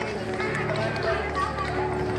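Indistinct chatter of several people talking at once, with no clear words, over a steady low hum.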